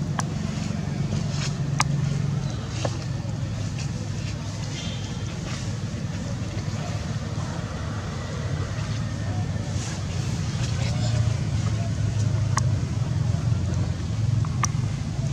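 A steady low rumble like a running motor, with a few sharp clicks.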